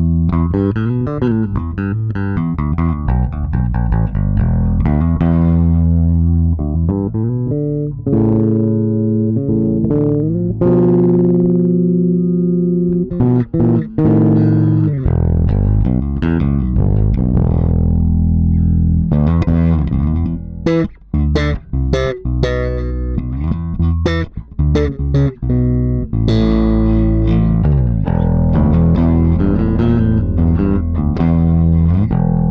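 Squier 40th Anniversary Gold Edition Jazz Bass, with single-coil pickups, played through a Blackstar amp: a continuous bass line of plucked notes, some held and some moving. In the second half comes a stretch of short, sharp notes with clicky attacks.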